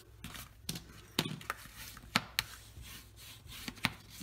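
Hands pressing and smoothing a sheet of cardstock just folded in half, creasing the fold flat: soft paper rubbing with several sharp light taps and clicks scattered through.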